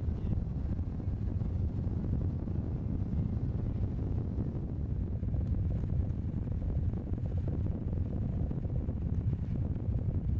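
Steady low rumble of wind buffeting an outdoor microphone, with no clear pitched engine note.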